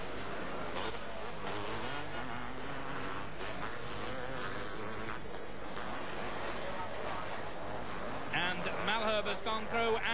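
Two-stroke motocross race bikes running on the circuit, their engine notes rising and falling as riders open and close the throttle.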